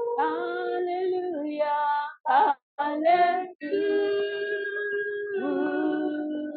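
A woman singing long held notes of a gospel worship song, unaccompanied, stepping between pitches with brief silent breaks between phrases.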